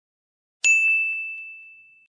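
A single bell-like ding sound effect. It strikes sharply about half a second in and rings as one steady high tone that fades away over about a second and a half.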